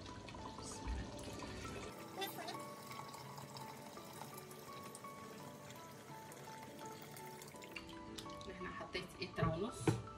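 Water poured from a jug into a pot of simmering tomato sauce, with background music throughout and a few knocks near the end.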